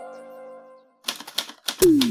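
A sustained synth pad fades out, and after a moment of silence a typewriter sound effect clicks out a quick, irregular run of keystrokes. Near the end a deep electronic kick drum with a falling pitch drops in as the beat starts.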